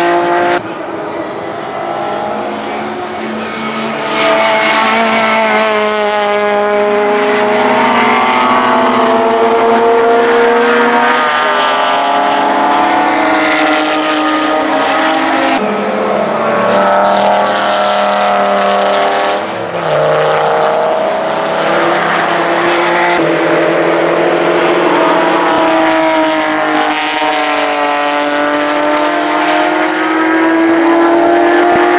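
Racing car engines at high revs as cars lap the circuit, a BMW M3 and a Dodge Viper among them. The pitch climbs and drops with throttle and gear changes. The sound breaks off abruptly several times as one pass gives way to the next.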